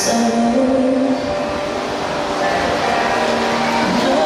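Show music plays loudly with held notes, over the steady rush and splash of water as an orca drives a trainer through the pool.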